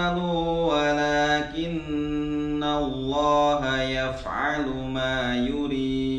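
A man reciting the Qur'an in Arabic in a slow, melodic chant, holding long notes on each phrase.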